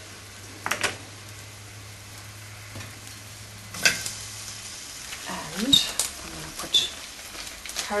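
Lamb and onions sizzling in a pot over raised heat while being stirred, with a few sharp clicks of the utensil against the pot.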